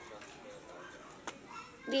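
Faint voices of children playing in the background, with a single short click about 1.3 seconds in.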